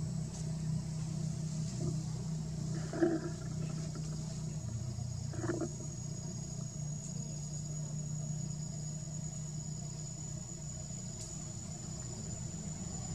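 Two short macaque calls, about three and five and a half seconds in, over a steady low motor hum and a thin, steady high tone.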